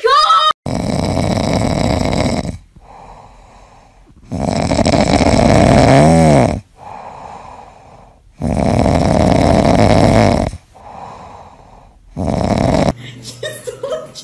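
Cat snoring in its sleep: loud snores of about two seconds each, coming about every four seconds, with quieter breaths between them.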